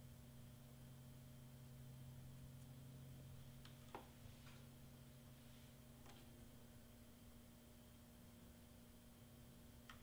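Near silence: a steady low room hum, with a few faint clicks around four and six seconds in as a plastic syringe is worked at a printer's ink tank.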